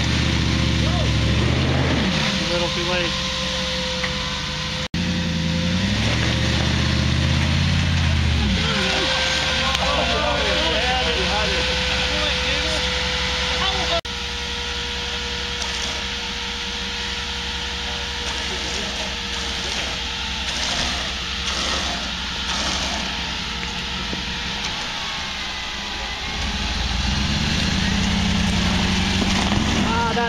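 Rock-crawling Jeep's engine revving in bursts under load as it climbs a steep rock ledge, easing back between pushes, with a steady whine running underneath.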